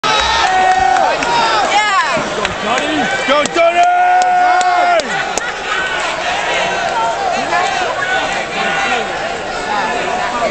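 Boxing arena crowd cheering and shouting, with several loud, drawn-out yells from fans close to the microphone.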